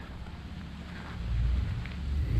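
Wind buffeting the camera microphone: a low rumble that swells about a second in.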